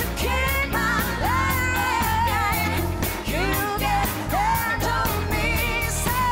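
Live pop-rock band: a woman's lead vocal singing long held notes with vibrato, over drums keeping a steady beat, bass and keyboard.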